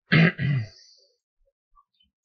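A man clearing his throat: two short, rough bursts in quick succession within the first second.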